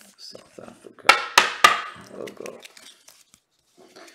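Foil wrapper of a Panini 2010 World Cup card pack being torn open and crinkled by hand, with three sharp crackles about a second in and softer rustling around them.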